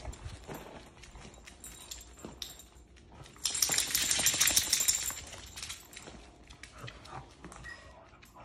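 A dog's claws clicking rapidly on a hardwood floor as it scrambles across it. A dense run of quick taps starts about three and a half seconds in and lasts about a second and a half, with scattered lighter clicks around it.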